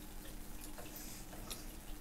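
Quiet room tone: a faint steady hum with a few soft ticks.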